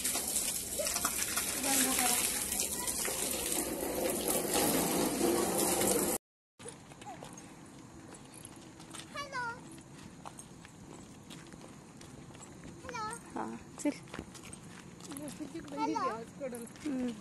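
Garden hose spraying water onto a wet concrete floor: a steady hiss that cuts off abruptly about six seconds in. After that comes quieter open-air sound with a bird's short runs of falling chirps, twice, and a voice near the end.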